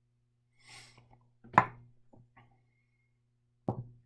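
A short splash of liquid poured from one glass beaker into another, then a sharp glass clink about a second and a half in, a few light ticks, and a knock near the end as a glass beaker is set down on the table.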